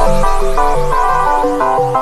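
Electronic dance music: a quick run of short, stepped synthesizer notes over a bass line.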